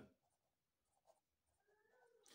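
Near silence, with the faint scratch of a felt-tip marker writing a word on paper.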